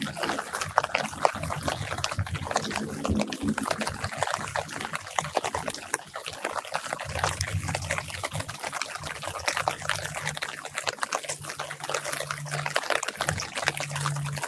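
Light rain pattering on orange tree leaves and dripping: a dense, even sprinkle of drops. A low rumble comes and goes underneath.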